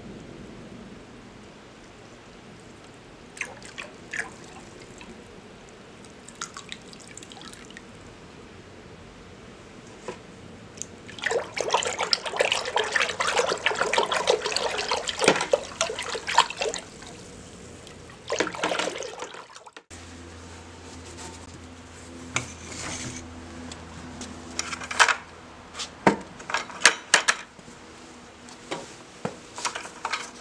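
Soluble-oil coolant concentrate poured in a thin stream into a bucket of water, then stirred with a steel bar, the liquid sloshing loudly for several seconds around the middle as it turns milky. After a sudden break, a low steady hum with a few sharp clicks.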